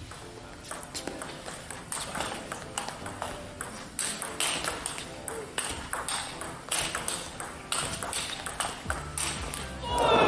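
Table tennis rally: the ball clicking sharply and repeatedly off the paddles and the table in quick back-and-forth exchanges, with music underneath.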